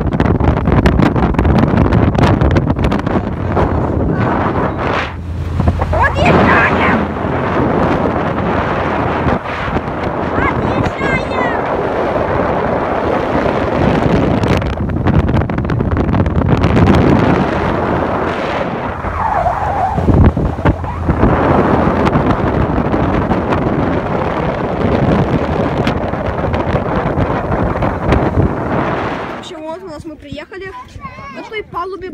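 Strong wind buffeting the microphone: a loud, continuous rumbling roar that stays heavy throughout.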